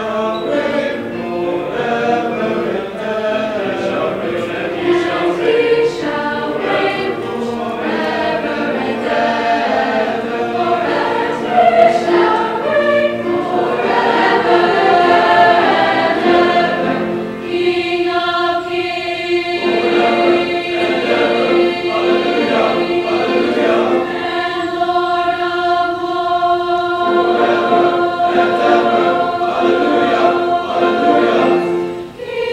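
School chorus singing, moving through changing notes at first and then holding long sustained notes through the second half.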